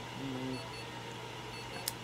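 Nail clippers snipping a cat's claw: one sharp click near the end. A brief low voice murmur comes early, over a steady hum and faint, regularly repeating high electronic beeps.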